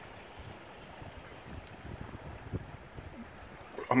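Fast river current running past a kayak: a steady, fairly quiet wash of water with irregular low bumps from about halfway through. The current is strong enough that paddling against it is hard, which the paddler thinks may be an increased release from the dam upstream.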